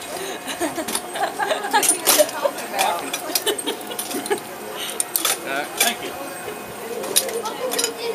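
Metal chains of a swing ride clinking and rattling in a string of sharp, irregular clinks as riders handle and settle into the hanging seats, over the chatter of voices.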